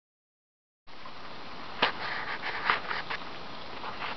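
Steady outdoor hiss that cuts in suddenly about a second in, with a few sharp clicks or crunches scattered through it.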